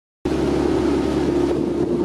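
Motorboat engine running steadily as the boat travels along the river, with wind rushing over the microphone. It starts suddenly about a quarter second in.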